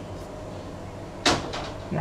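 A kitchen knife paring peel off a kaffir lime, mostly quiet, with one short sharp scrape or knock about a second in.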